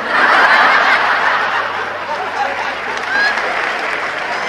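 Audience laughing, loudest at the start and slowly dying down.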